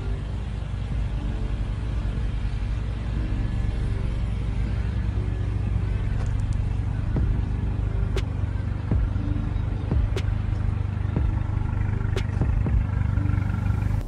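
A car engine idling close by, a steady low rumble, with a few sharp clicks in the second half.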